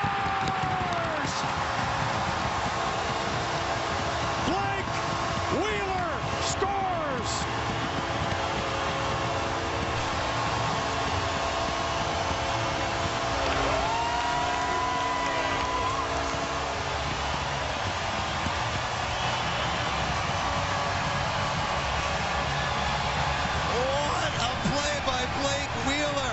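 A hockey arena crowd roaring and cheering for the home team's overtime winning goal, with whoops and whistles rising out of the roar. A steady multi-tone goal horn sounds over the crowd from about a second in until about two-thirds through.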